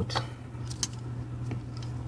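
A few light clicks and knocks from a camera tripod being adjusted by hand, over a steady low hum.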